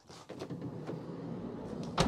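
A Volkswagen California's sliding side door rolling along its rail, ending in a loud thud as it shuts near the end.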